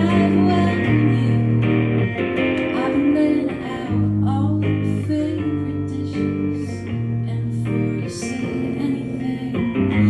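Live Americana song: a woman singing over a strummed electric guitar, its chords changing every second or so.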